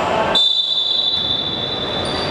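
Referee's whistle blown in one long, steady, shrill blast, starting about a third of a second in and held for well over a second, cutting in over the noise of players on the court.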